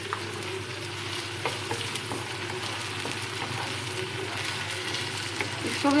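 Chopped okra sizzling as it fries in oil in a metal kadai, stirred with a wooden spoon that gives a few light scrapes and taps against the pan.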